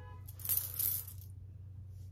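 A person sniffing perfume on her wrist: two quick airy sniffs close to the microphone, about half a second in.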